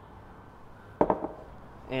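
A single knock on a wooden butcher-block counter about a second in, fading quickly, after a second of faint room tone.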